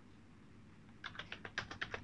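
Computer keyboard typing: a quick run of keystrokes, roughly ten a second, starting about a second in.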